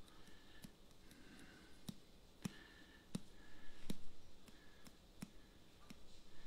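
A finger tapping a glass paprika jar to shake the spice out a little at a time: faint, irregular clicks, about one every half second to a second.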